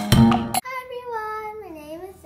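Intro music with plucked guitar and percussion cuts off about half a second in. A young girl's voice follows with one long sung note that slides down in pitch.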